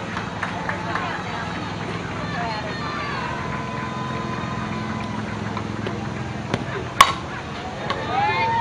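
A softball bat striking a pitched ball about seven seconds in: one sharp crack, the loudest sound here, over the steady talk and calls of spectators and players.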